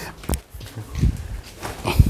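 A sharp knock and a couple of low thumps as a potted tree in a plastic-bag pot is lifted and set down on a stool, the last thump the loudest.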